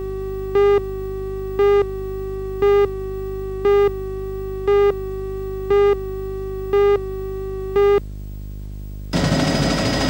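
Countdown leader beeps on a broadcast videotape: a short, loud electronic beep once a second, nine in all, over a steady low hum and faint tone. About nine seconds in, the beeps give way to a louder, noisy helicopter sound.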